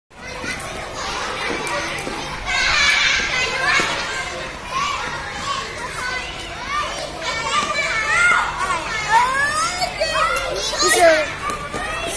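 Young schoolchildren at play, many children's voices calling and chattering over one another, with high-pitched calls that rise and fall, busiest in the second half.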